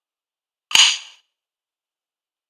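A china plate set down on a hard worktop: one sharp clack with a short ring, about three-quarters of a second in.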